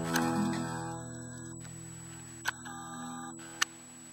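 Final strummed chord on an acoustic guitar ringing out and slowly fading. Two short clicks come about halfway through and near the end.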